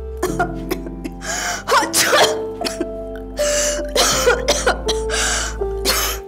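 A woman coughing and sneezing several times in short bursts, over background music with sustained tones. It is a dust-allergy reaction set off by dusting furniture.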